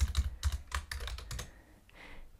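Computer keyboard typing: a quick run of keystrokes that stops about a second and a half in.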